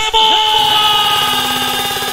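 A single long horn-like electronic tone from a DJ mix, starting abruptly, holding with a slight downward drift and slowly fading.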